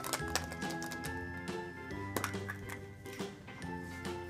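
Instrumental background music with steady held notes, with a few light clicks over it as a plastic egg is picked up and handled.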